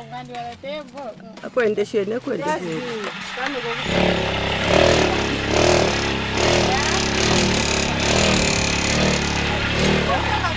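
Voices, then about four seconds in a roof-tile machine's motor-driven vibrating table starts suddenly and runs steadily while mortar is spread on the tile mould.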